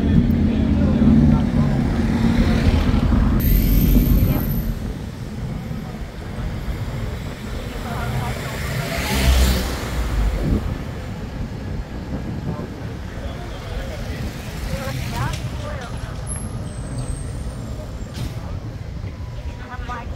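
Wind rumbling on the microphone with road noise while riding along a town street, heavier in the first few seconds and swelling briefly about halfway through.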